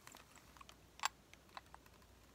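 A few light clicks and taps from a small porcelain trinket box being handled in the fingers, with one sharper click about a second in.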